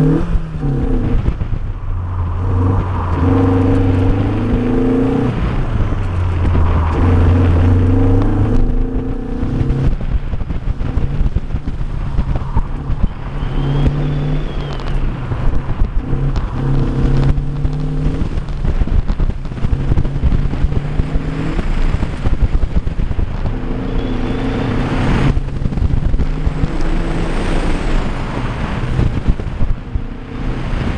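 1990 Mazda Miata's 1.6-litre four-cylinder engine driven hard, its revs rising and falling again and again as the car accelerates and lifts through an autocross course. Wind buffets the microphone the whole time.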